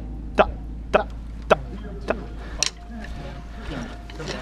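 Sharp clicks keeping a steady tempo, a little under two a second, which stop a little before three seconds in; people talk in the background.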